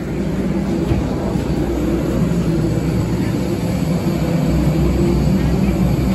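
Steady low mechanical drone with a hum, the noise of a parked jet airliner and its ground equipment on the apron, growing a little louder in the first second or so.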